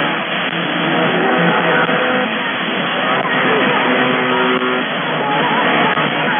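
A song with singing and guitar received over shortwave radio. The sound is narrow and muffled, cut off above the radio's bandwidth, and sits under heavy static hiss.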